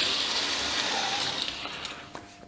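Märklin 3021 (V200) H0 model diesel locomotive running on metal track: a steady whirring rush from its motor and wheels, fading out over the last half second.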